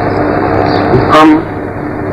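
A steady drone of several held tones, unchanging throughout, with one short spoken word from a man about a second in.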